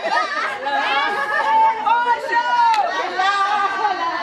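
A group of women's voices overlapping in lively chatter and calling out, with some longer drawn-out voiced notes around the middle.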